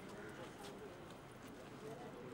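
Faint, indistinct voices of people gathered close together, with a few light clicks.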